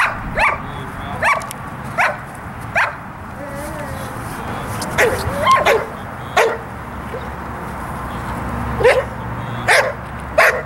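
Young German Shepherd barking at the helper during bitework: about ten sharp single barks, in a quick run at the start, a cluster a little past the middle, and two more near the end.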